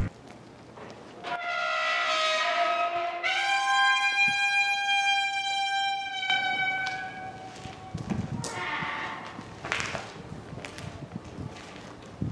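Wrought-iron gate hinge squealing as the gate is pushed open: one long drawn-out squeal of about six seconds that steps up in pitch partway through and sags at the end, followed by a few short knocks.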